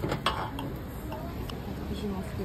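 Cutlery on a ceramic plate: a knife and fork cutting a toasted sandwich, giving a few light clicks and scrapes of metal on the plate, most near the start.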